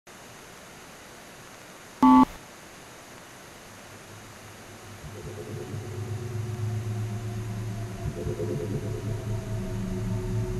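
Electronic soundtrack: a faint steady hiss, cut by one short loud beep about two seconds in, then a low drone of several held tones that fades in from about five seconds and keeps growing louder.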